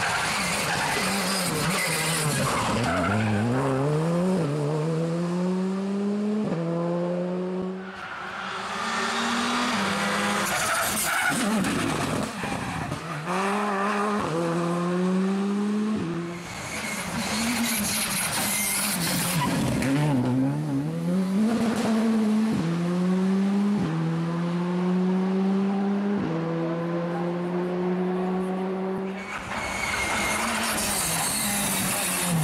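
Rally cars taking a tight hairpin one after another. Each engine note drops as the car brakes into the turn, then climbs through several quick upshifts as it accelerates away. Tyre noise runs between the engine runs.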